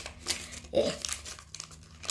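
A small foil collectible packet crinkling and crackling in a one-handed struggle to tear it open.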